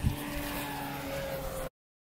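Outdoor background noise with a faint steady hum, with a soft thump at the start; it cuts off abruptly at about a second and a half in, leaving digital silence.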